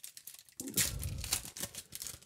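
A foil booster pack wrapper crinkling and tearing as a pack is opened by hand: a dense crackle that starts about half a second in.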